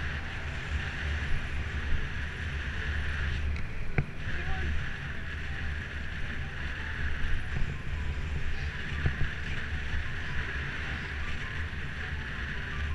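Wind buffeting the camera microphone of a bicycle in motion, a steady low rumble and hiss mixed with road noise. There is one sharp click about four seconds in.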